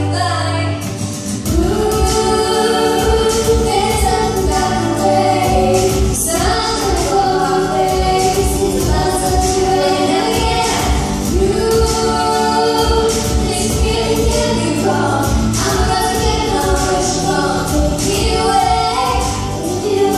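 A woman and a girl singing a song together through handheld microphones over recorded backing music with a steady beat.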